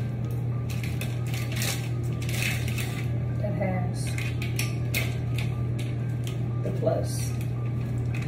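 Plastic pregnancy test sticks being handled, giving scattered clicks and light rattles, over a steady low hum.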